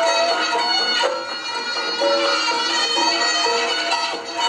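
Reog gamelan accompaniment led by a slompret, the nasal double-reed trumpet, playing a winding melody that glides between notes.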